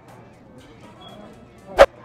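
Low background music, broken near the end by one sharp, loud knock.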